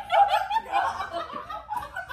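A woman chuckling, loudest in the first second and trailing off after.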